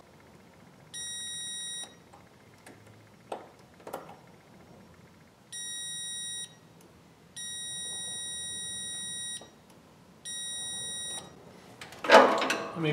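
Digital multimeter's continuity beeper sounding four times, steady high beeps of about a second each with one lasting about two seconds, as the test probes make contact through the A/C ambient switch circuit. A couple of faint taps fall between the first two beeps.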